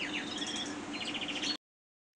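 Canaries singing fast, repeated trilled chirps. The sound cuts off abruptly to silence about one and a half seconds in.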